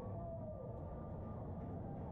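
Ice-arena ambience: a steady low rumble and hiss with no distinct events, and a faint tone that slides down in pitch about half a second in.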